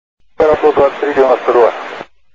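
A voice over an air-traffic-control radio channel, thin and cut off at both ends of the range, starting about half a second in after a moment of silence.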